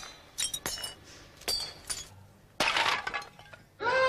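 Karate breaking demonstration: a run of sharp, clinking knocks with a brief high ring, then a louder crash of brittle material breaking about two and a half seconds in, lasting about a second. A voice starts right at the end.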